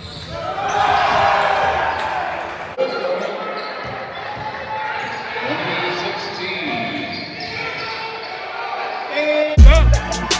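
A basketball bouncing on a hardwood gym floor during play, among voices from the stands, which swell about a second in. Near the end, loud bass-heavy music cuts in.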